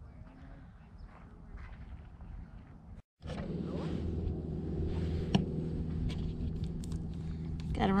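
Faint outdoor ambience, then, about three seconds in, a steady low hum from a motor or engine with a few light clicks over it.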